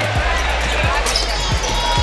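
A basketball being dribbled on a hardwood court, a low thump about every half second, over steady arena noise.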